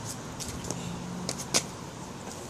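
A few light taps and clicks, the sharpest about one and a half seconds in, over a faint steady outdoor background hum.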